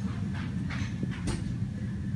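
Steady low hum of shop background noise, with two brief soft rustles about half a second and just over a second in.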